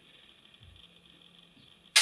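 Quiet room tone, then near the end one sudden sharp click, the loud snap of a camera's shutter being released.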